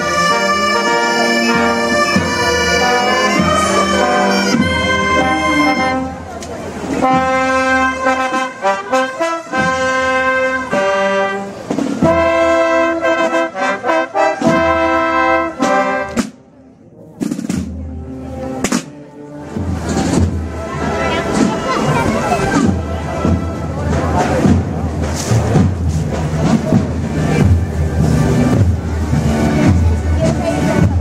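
A procession band plays a slow march, its brass holding sustained chords. About halfway through the music breaks off briefly, then gives way to a busier, noisier stretch of drumming with voices.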